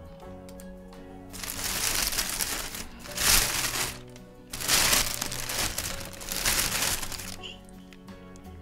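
Thin plastic carrier bag crinkling and rustling as it is pulled open and handled, in three long spells. Faint background music runs underneath.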